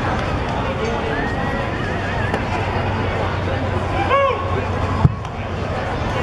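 Steady ballpark crowd chatter, with one fan's short high shout about four seconds in. A second later comes a single sharp pop, the loudest sound here: the pitch hitting the catcher's mitt.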